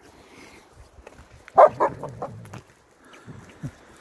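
A dog barks twice in quick succession, about a second and a half in.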